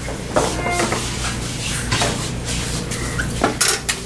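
Metal tools and parts clattering and knocking as they are handled at a workbench, with a quick run of louder knocks near the end, over a steady low hum.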